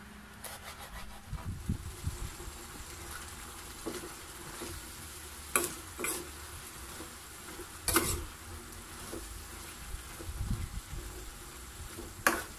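Pechay, sardines, garlic and onion sautéing in a pan, sizzling steadily while a metal ladle stirs them. The ladle knocks sharply against the pan a few times, loudest about eight seconds in.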